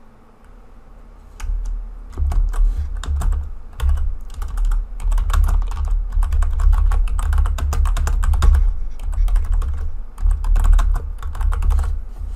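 Typing on a computer keyboard: a fast, dense run of keystroke clicks, each with a dull low thump, starting about a second and a half in and going on in quick bursts.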